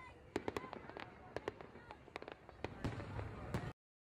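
Fireworks going off: a dense run of sharp bangs and crackles over a low rumble, which cuts off suddenly near the end.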